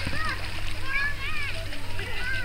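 Children's voices calling and shouting across a busy swimming pool, with water splashing close by as the toddler paddles at the ball.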